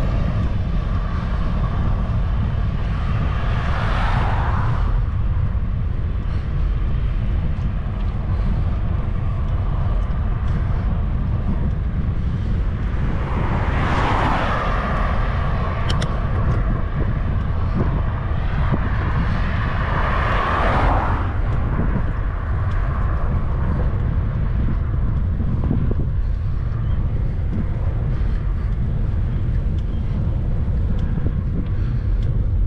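Steady low rumble of wind buffeting the microphone of a moving bicycle, with motor vehicles overtaking on the road, each swelling and fading away, about four, fourteen and twenty-one seconds in.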